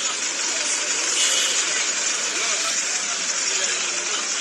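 Street noise at a minibus station, played back from a phone video: minibus engines running under the indistinct voices of people, over a steady hiss.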